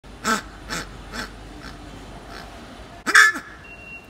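Pink rubber squeaky pet toy squeezed by hand, giving a run of short honking squeaks, three in the first second and a bit, then fainter ones, and a loudest double squeak near the end that bends up and back down in pitch.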